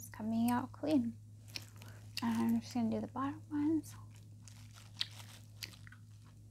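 A woman's voice making short murmured sounds with no clear words through the first four seconds, followed by a few faint clicks and crinkles of plastic gloves handling dental floss. A steady low hum runs underneath.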